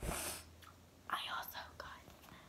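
A girl whispering, unvoiced and breathy, about a second in, after a short rush of noise with a low thud right at the start.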